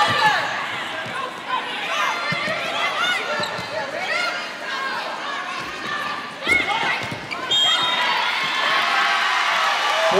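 Sneakers squeaking in short chirps on a hardwood volleyball court during a rally, over a murmuring arena crowd. A sharp ball hit lands about six and a half seconds in, and the crowd then cheers and applauds.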